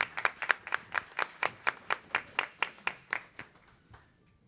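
Applause: a steady run of hand claps, about five a second, fading out near the end.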